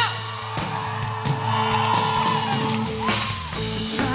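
Live rock band playing between sung lines, with a drum kit keeping the beat under sustained electric guitar.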